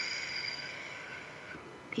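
A slow exhale through pursed lips, as if through a straw: a breathy hiss that fades out over about a second and a half.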